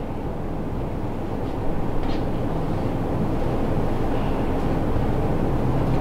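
Steady low hum of a lecture room's ventilation and room noise, with a couple of faint clicks.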